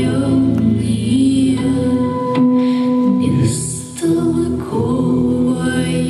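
Vocal music: several voices singing long, held notes in a choir-like style. The sound dips briefly about four seconds in, then a new phrase begins.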